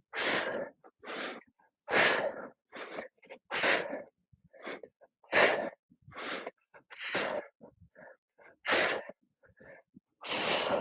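A person breathing hard through an ab exercise of leg raises: sharp, noisy breaths in and out about once a second, alternating louder and softer.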